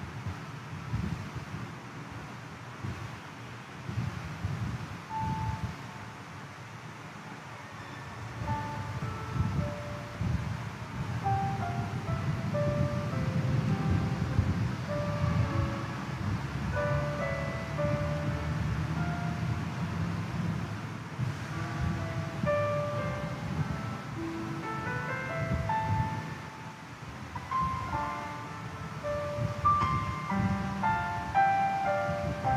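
Instrumental music: slow melody notes come in about eight seconds in and grow busier towards the end, over a low steady rumble.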